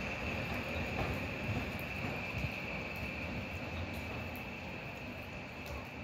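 HŽ series 6112 Končar electric multiple unit rolling over station tracks as it draws away: a low rumble with a steady high whine above it, slowly fading.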